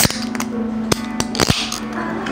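Ring-pull tab of an aluminium drink can being worked open: a few sharp clicks, then a pop about one and a half seconds in with a short fizzing hiss of released gas.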